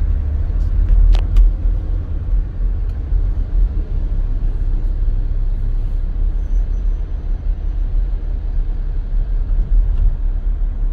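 Steady low rumble of a car driving in city traffic, heard from inside the cabin. A couple of sharp clicks come about a second in.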